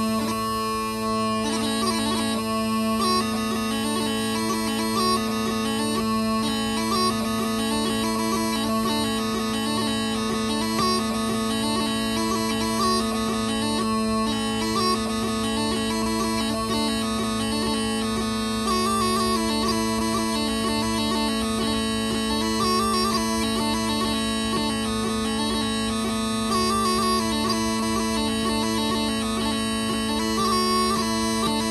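R G Hardie Twist Trap practice pipes playing a dance jig: a quick, rhythmic chanter melody over a steady drone that never stops.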